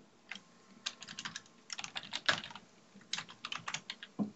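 Computer keyboard typing in quick bursts of several keystrokes each, with short pauses between the bursts.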